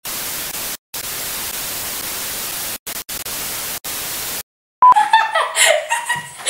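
TV static hiss used as a transition effect over colour bars, cutting out briefly a few times and stopping about four and a half seconds in. Girls' voices start loudly near the end.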